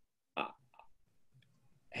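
A man's brief hesitant "uh", then near silence.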